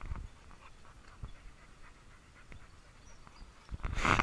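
A dog panting faintly, with soft, irregular breaths.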